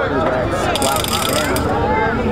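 A rapid ratcheting clatter of clicks, starting just under a second in and lasting about a second, over people's voices.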